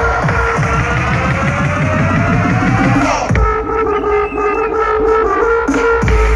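Loud bass-heavy electronic dance music over a festival sound system. A rising sweep builds for about three seconds, then breaks into a sparer passage with a held tone and little bass, and heavy bass comes back near the end.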